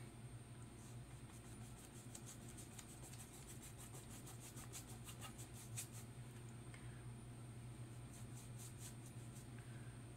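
Faint, scratchy strokes of a paintbrush working acrylic paint on paper, with many small ticks of the bristles, over a steady low hum.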